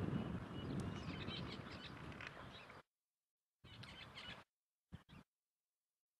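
Faint outdoor ambience of wind noise with a few faint high bird chirps, fading away over the first three seconds. The sound then drops to silence, broken by one short burst of the same noise and two brief crackles.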